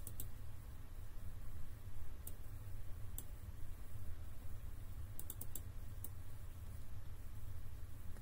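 Scattered clicks at a computer, single ones now and then and a quick run of four a little past five seconds in, over a steady low hum.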